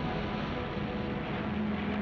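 Steady drone of propeller aircraft engines, a dense even rush with a faint low hum, cutting off suddenly at the end.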